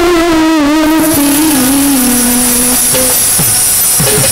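Baul folk ensemble playing instrumentally: a lead melody wavers at first, then settles into steady held notes. Near the end come a couple of hand-drum strokes that drop in pitch.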